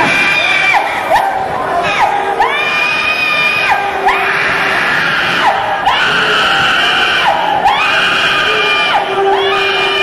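Congregation screaming and shouting during a deliverance prayer: one long high-pitched scream after another, each rising, held about a second and falling away, over a loud crowd.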